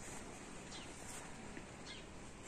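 Faint outdoor background noise with a few short, faint high chirps from small birds, spaced about a second apart.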